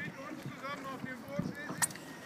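Faint voices of people talking in the background, with a single sharp knock near the end.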